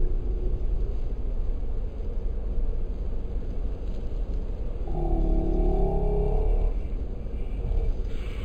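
Slowed-down field recording: a steady low rumble, with a deep, drawn-out pitched sound from about five to seven seconds in.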